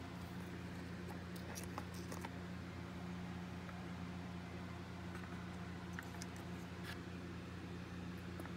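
Faint, scattered clicks and taps of miniature bases and the plastic storage case being handled, over a steady low hum.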